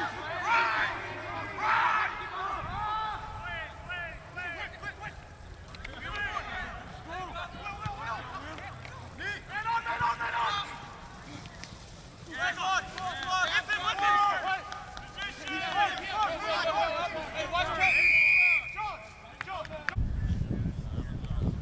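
Several voices shouting and calling across a rugby pitch during open play, with one short referee's whistle blast near the end.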